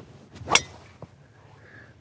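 A driver swung through and striking a golf ball off a tee: a short whoosh ending in a single sharp crack at impact about half a second in. A faint click follows about half a second later.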